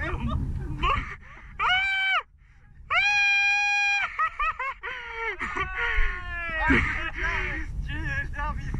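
A man screaming in alarm: two long held yells, then a long wail that falls in pitch, with a low wind rumble on the microphone.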